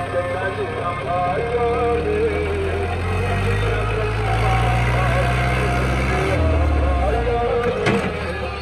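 A song with singing plays over a New Holland Dabung 85 tractor's diesel engine labouring as its front blade pushes soil. The engine's steady low note grows stronger through the middle and changes about six seconds in. There is a sharp click near the end.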